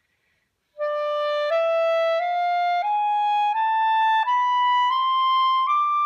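B-flat clarinet playing an ascending E Mishaberach scale in the upper register: eight even notes, E, F-sharp, G, A-sharp, B, C-sharp, D, E, starting about a second in, with the top E held.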